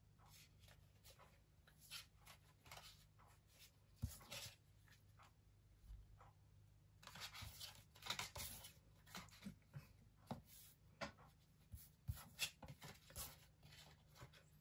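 Faint, scattered rustles and taps of Pokémon trading cards being handled and laid out in order, with a sharper tap about four seconds in and busier handling a few seconds later.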